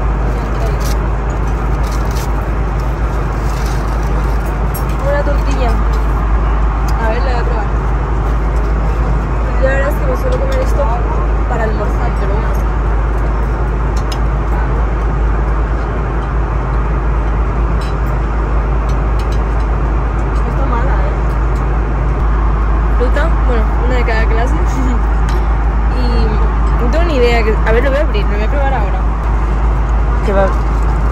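Steady airliner cabin drone in flight: a deep, constant rumble of engine and airflow noise. Faint voices murmur in the background now and then, with light crinkling of aluminium foil being unwrapped close by.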